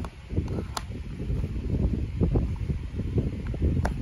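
Wooden alphabet puzzle pieces being pressed into a wooden peg board, with two sharp clicks of wood on wood, about a second in and near the end, over a steady low, uneven rustling and rumbling.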